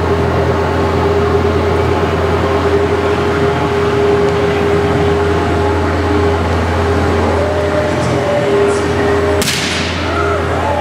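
Electric floor fans running loud and steady, with a constant motor hum. A single sharp crack near the end.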